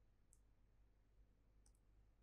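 Near silence: room tone with a few faint, short clicks, one about a third of a second in and a quick pair near the end, from a stylus tapping a writing tablet.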